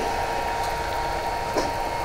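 A pause in speech filled by room tone: a steady low hum with a constant high thin tone, and a brief faint sound about one and a half seconds in.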